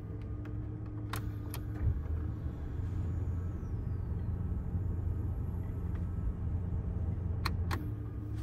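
2001 Mazda B3000's 3.0-litre V6 idling, heard from inside the cab. A couple of sharp clicks from the heater and fan controls come about a second in and again near the end. Between them a steady hum drops out and the low rumble grows a little louder.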